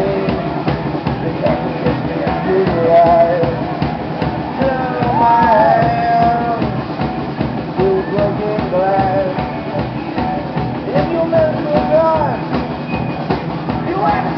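Live rock band playing: electric guitars and drums, with a singer's voice over them.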